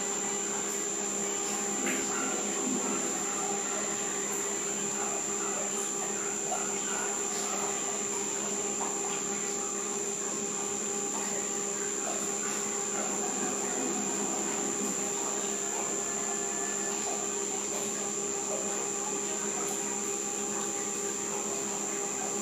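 Underwater treadmill running with a steady motor hum and a high, constant whine, water churning in the tank as the dog walks.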